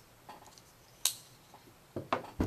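Emerson Horseman folding knife with titanium liner lock being closed: a faint click, then one sharp click about a second in as the blade snaps shut.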